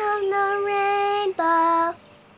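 A high singing voice holds one long, steady note, breaks off briefly, then sings a shorter, lower note, as part of a sung song.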